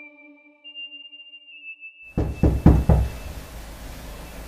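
A faint, thin, high electronic tone for about two seconds, then four quick knocks on a door about halfway through.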